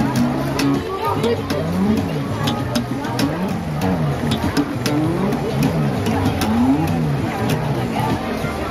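Funk electric bass played through a small amp, with the notes repeatedly sliding up and down the neck in quick glides over a steady low note. Sharp percussive clicks run through it.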